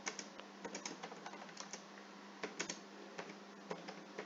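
Typing on a computer keyboard: faint, irregular keystrokes as a line of text is typed.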